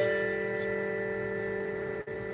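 Keyboard instrumental music: one held chord rings on and slowly fades, then breaks off suddenly at the end.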